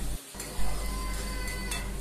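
A metal spatula stirring thick masala gravy in a steel kadhai, scraping the pan over a low sizzle as the gravy fries in the oil that has separated from it. The sound drops out briefly just after the start, and faint background music runs under it.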